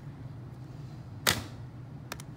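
A single sudden knock about a second in, a TI-84 Plus graphing calculator set down on the paper-covered desk, over a steady low hum.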